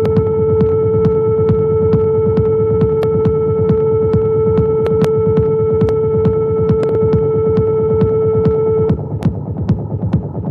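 Hardware synthesizer jam on a Behringer TD-3 and Cre8audio West Pest: a rumbling kick pattern under a steady held drone tone, with sharp ticks about four a second. The drone cuts off about nine seconds in, leaving the kicks and ticks.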